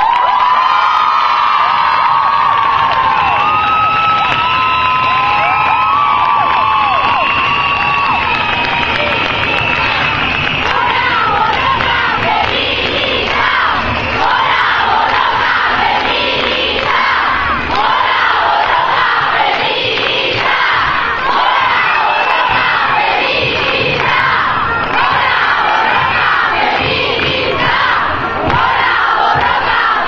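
A large crowd cheering and shouting loudly. Long, high held cries ring out over it for the first ten seconds or so, then it becomes a dense roar of many overlapping voices.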